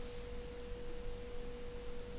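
A faint, steady tone of a single pitch over a low background hiss.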